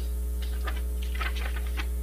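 Steady electrical mains hum on the room's sound system, with a few faint scattered clicks and rustles.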